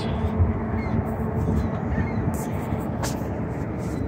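Outdoor background noise: a steady low rumble with a faint click about three seconds in.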